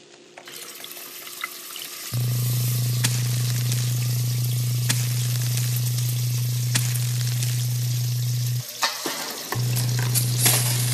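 Electric kettle heating up, a crackling hiss that swells in the first two seconds. About two seconds in, a loud steady low hum joins it, cuts out for about a second near the end, then returns.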